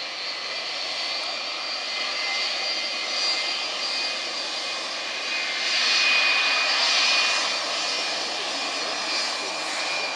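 Jet2 Boeing 757 jet engines running as the airliner rolls along the runway: a steady roar with a high whine. It grows louder about six to seven seconds in, then eases.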